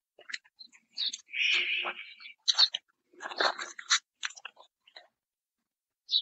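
A plastic sheet crackling and rustling under a horse's hooves as it steps onto it: irregular crackles and clicks, with a longer rustle between one and two seconds in and another burst of crackling in the middle.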